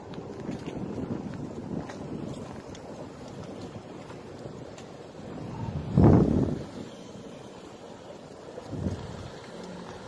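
Outdoor ambience with wind buffeting the microphone over a steady low rumble, and one short loud rush about six seconds in, with a smaller one near the end.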